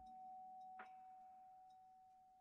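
Near silence: a faint steady tone holding one pitch, with a single soft click a little under a second in.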